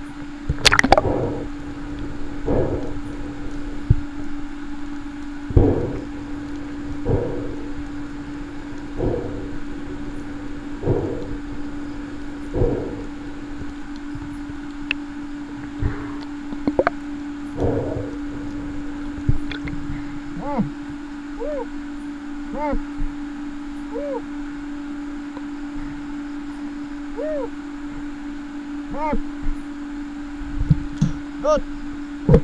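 A freediver breathing up through a snorkel before a dive, slow deep breaths every second or two, followed by the muffled underwater sound of the dive with soft chirps repeating about once a second. A steady low hum runs underneath throughout.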